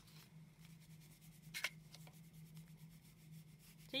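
Faint rubbing of a wax crayon on paper and of the paper sliding as it is turned on the table, with one brief louder scrape about a second and a half in.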